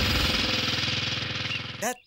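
A horse-drawn cart rattling along at speed: a fast, even clatter with a hiss that cuts off just before the end, where a man's voice begins.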